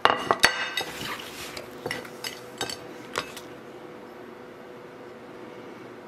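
A ceramic plate set down on a wooden cutting board, with a quick run of clinks and taps as apple slices and a knife meet the plate, then a few lighter clicks.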